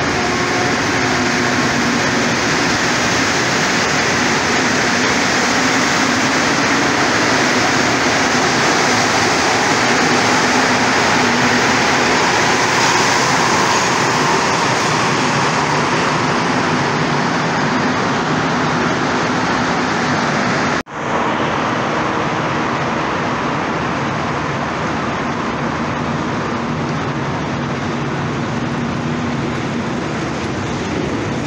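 Rubber-tyred Montreal Metro train pulling out of the station, a loud rushing noise with a steady motor hum that swells and then eases as the train leaves. About two-thirds of the way through the sound cuts off for an instant, and the loud rumble of a train in another station follows.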